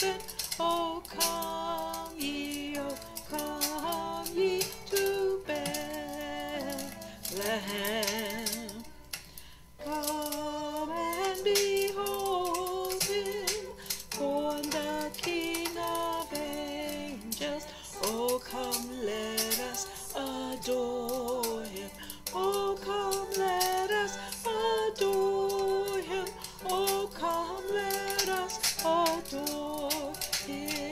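A Christmas carol sung by a woman's voice over musical accompaniment, with a long wavering held note about eight seconds in.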